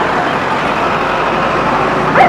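Steady road traffic noise: vehicle engines and tyres on the street, with no voices standing out.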